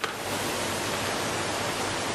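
A steady, even hiss like static, which starts suddenly and holds level throughout.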